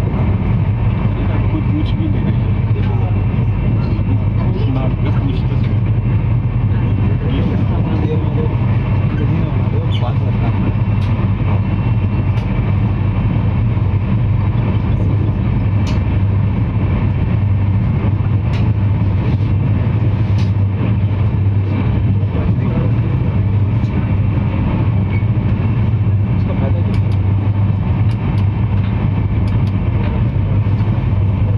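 Inside a moving Tejas Express passenger coach: a steady rumble of the train running on the track, with a strong low hum.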